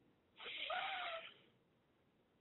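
A person's deep breath in through the nose, lasting about a second, with a faint whistle in it.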